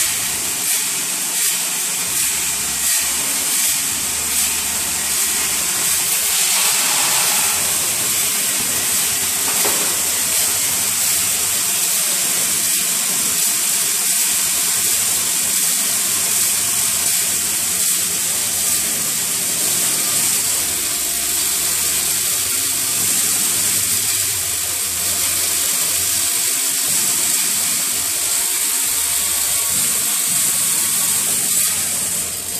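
Hardware weighing and packing line running: vibratory bowl feeders and conveyors shaking small metal parts such as screws, making a steady, high, hissing metallic rattle.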